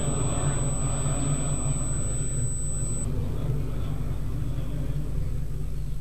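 Steady low hum and rumble of room noise, with a faint murmur that thins after the first couple of seconds. A thin high-pitched whine cuts off about three seconds in.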